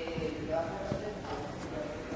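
Indistinct voices talking in the background, broken by a few short clicks or taps.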